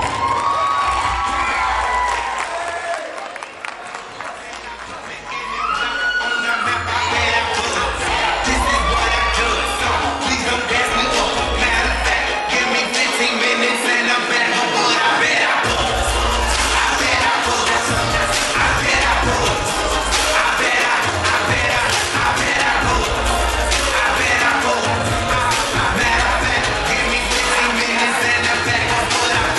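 Recorded hip-hop/pop track with a heavy bass line playing loudly over a student audience cheering, screaming and whooping. The bass drops out twice, briefly, while the crowd noise carries on.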